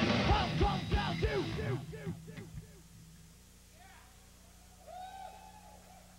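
Live rock band, drums and amplified guitars, ending a song: loud drum hits and a string of short falling tones for about two seconds, dying away by about three seconds to a steady amplifier hum. A faint drawn-out whoop rises over the hum about five seconds in.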